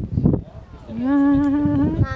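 A person humming one held note, about a second long, that starts about halfway in and edges slightly up in pitch, after a brief murmur of voice.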